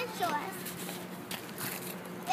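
A child's short voiced sound, falling in pitch, just after the start, then faint crunching as wet snow is handled and packed.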